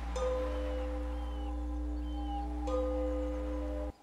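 A meditation bell struck and left ringing in a long, steady tone, then struck again about three seconds in, over a low steady hum.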